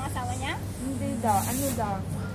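Voices in a café, with a brief high hiss about a second in, over a steady low hum.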